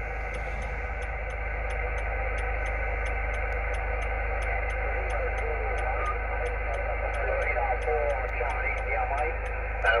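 Icom IC-706 HF transceiver's speaker receiving upper-sideband on the 20 m band: steady band hiss with a weak, garbled voice of a distant station faintly coming through, and a faint ticking about four times a second.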